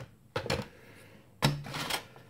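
Foam takeaway box being handled: two short bursts of rubbing and creaking, the second, longer and louder one about a second and a half in.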